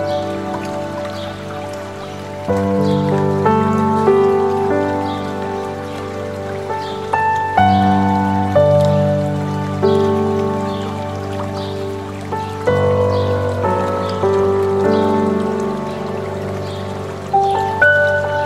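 Slow, soft solo piano music, with chords struck about every five seconds and left to ring, laid over the steady rush of flowing water.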